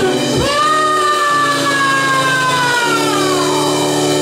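Live rock band: the lead singer holds one long note that sags in pitch near the end, over sustained electric guitar and keyboard chords, with no drums.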